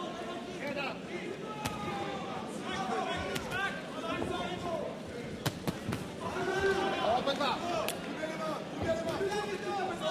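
Arena crowd voices and shouts around a boxing ring, with several sharp thuds of gloved punches landing, the clearest a quick pair about five and a half seconds in.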